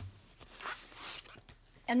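A sharp tap, then two brief swishing rustles of craft paper and its plastic wrapping being slid and handled, about half a second and a second in.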